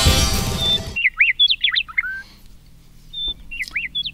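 Intro music ends about a second in, then a small bird chirps in short, quick calls sweeping up and down in pitch, in two bursts with a pause between.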